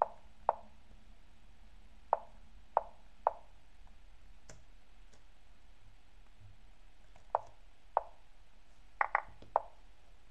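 Lichess online chess move sounds: a string of short wooden clicks, one for each move played, about ten in all, in irregular bursts with three in quick succession near the end.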